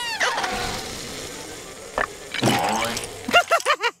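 Animated cartoon sound effects: a noisy rush that rises at the start and fades away, with a click about two seconds in, then a character laughing near the end.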